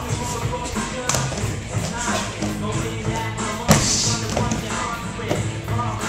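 Music with a steady beat, over which a body lands heavily on a foam crash mat with one loud thud about two-thirds of the way through.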